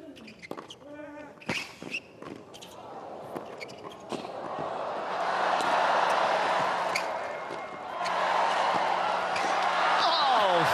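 Tennis ball struck back and forth with rackets in a long rally, sharp hits a second or two apart. The crowd's noise swells into loud cheering from about halfway through, dips briefly near the end, then rises again.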